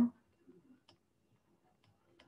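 A few faint, scattered ticks of a stylus tapping on a pen tablet while handwriting, otherwise near silence.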